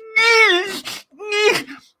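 A man's mock crying: a high-pitched, wavering wail, then a second shorter wail about a second and a half in, imitating fake tears.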